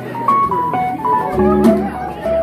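Jazz piano trio playing: a quick run of notes on a stage piano over upright bass and drum kit, with light cymbal strokes.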